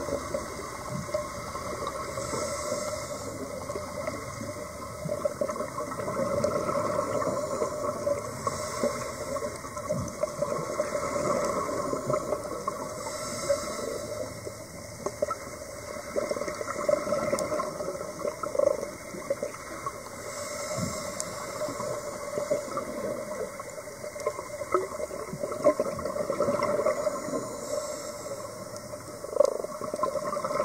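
Underwater ambience heard through a diving camera's housing: a steady muffled hum with light crackle, broken about every five to six seconds by a second-long rush of a scuba diver's exhaled regulator bubbles.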